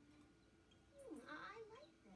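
A faint, short wordless voice sound about a second in, its pitch dipping and then rising, heard through a TV's speaker.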